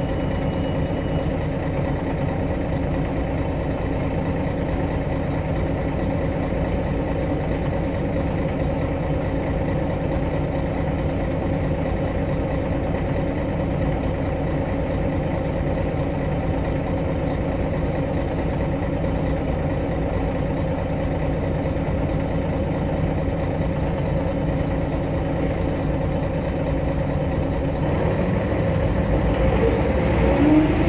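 Engine of a MAN NG313 articulated city bus idling steadily, heard from inside the passenger cabin. Near the end the engine note starts to rise as it revs up.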